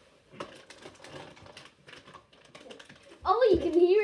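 Faint, scattered light clicks and rustling, then a child's high voice starts speaking loudly about three seconds in.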